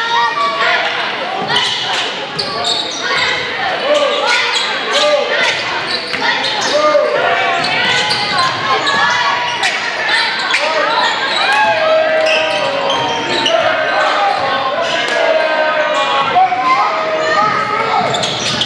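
A basketball bouncing on a hardwood gym floor with repeated sharp impacts during play. Indistinct voices of players and spectators shout and call out in the large gym.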